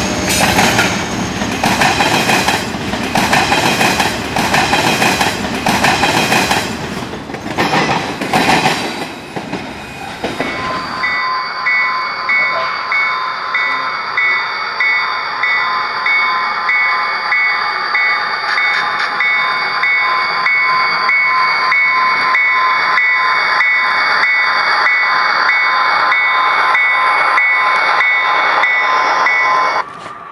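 Train cars rolling past, wheels clacking over rail joints in a steady rhythm. About eleven seconds in, the sound cuts to a passing passenger train: a steady high whine with a regular pulse about twice a second.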